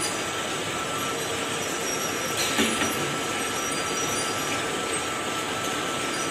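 Automatic bucket filling and capping line machinery running: a steady mechanical drone with a constant thin whine, and one short louder burst of machine noise about two and a half seconds in.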